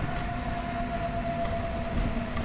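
A vehicle driving on a city road: a steady rumble of engine and road noise with a thin, steady whine held throughout.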